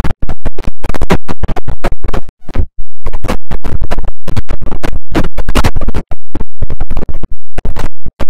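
Heavily distorted, clipped electronic audio chopped into rapid stuttering bursts, many per second, with brief dropouts, the longest about two and a half seconds in. This is a logo jingle mangled with 'G Major' pitch and stutter effects.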